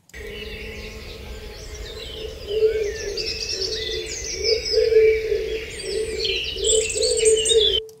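Birdsong field recording of many birds chirping over a low outdoor rumble, played back through an EQ with a narrow, boosted band at 440 Hz. This brings out a faint resonant A tone under the birds that swells and fades with the loudness of the recording. The playback cuts off just before the end.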